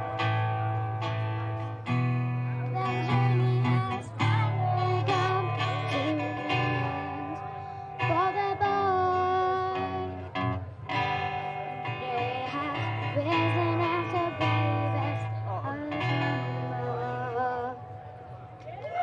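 A singing duo performing live: sung melody over strummed acoustic guitar, with a low bass note that shifts every couple of seconds.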